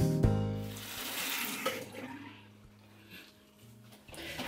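Acoustic guitar background music fading out early, then water running briefly, as from a tap for rinsing the face. The water dies away about halfway through.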